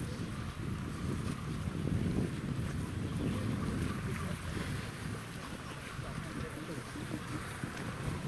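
Wind buffeting the microphone outdoors, a ragged low rumble throughout, with faint voices of a walking crowd underneath.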